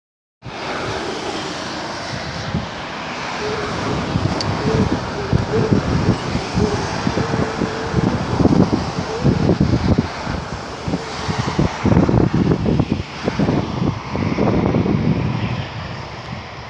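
Road and wind noise from a moving car, with irregular gusts of wind buffeting the microphone that grow heavier from about eight seconds in.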